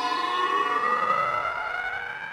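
Electronic music: a synthesizer tone rising steadily in pitch, a build-up sweep, over held steady chords.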